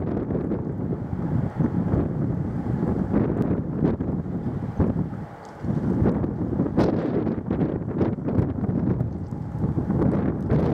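Wind gusting hard and buffeting the microphone, with a brief lull about halfway through before the gusts pick up again.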